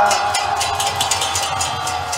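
Kirtan accompaniment between sung lines: hand cymbals (kartals) struck in a steady rhythm, about four strikes a second, over drum beats and a held harmonium-like note.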